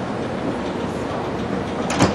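Walt Disney World monorail train running along its beamway, a steady rumble, with one sharp click near the end.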